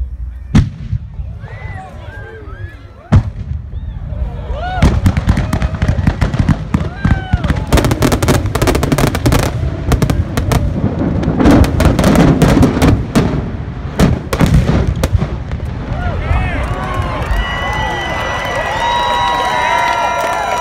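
Large fireworks fireball display going off: a couple of sharp reports, then from about five seconds in a dense barrage of booms and crackling lasting about ten seconds. In the last few seconds a crowd cheers and whistles.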